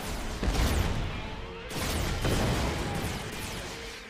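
Cartoon battle sound effects from an animated mecha series: weapons fire and blasts over a continuous low rumble, with many quick descending zaps layered on top. A fresh, louder barrage of fire starts a little under two seconds in.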